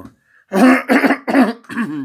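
A man coughing into his hand: a short fit of about four coughs in quick succession, starting about half a second in.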